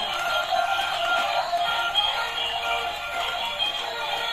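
Tinny electronic toy music from two battery-operated dancing toys, a Pikachu and a green dinosaur, playing their tunes at the same time through small built-in speakers, with no bass.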